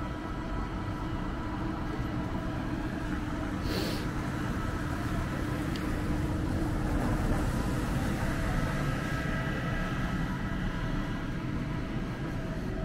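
Steady rumble and hum of a motor vehicle's engine running. It swells slightly mid-way, with a brief hiss about four seconds in.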